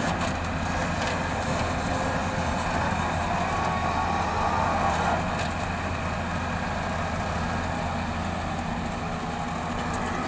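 Diesel engine of a Hyundai 200W-7 wheeled excavator running steadily under hydraulic load as it works its boom and swings the loaded bucket, rising slightly about halfway through.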